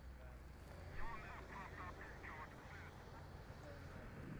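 A faint, thin, band-limited voice like radio chatter starts about a second in and lasts about two seconds, over a steady low rumble.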